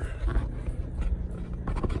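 Low rumble with soft, uneven thumps from a handheld phone microphone being moved and turned.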